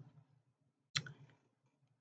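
A single short click a little under a second in, otherwise a near-quiet room with a faint low hum.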